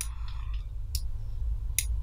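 Computer mouse clicking: three sharp clicks about a second apart, over a low steady hum.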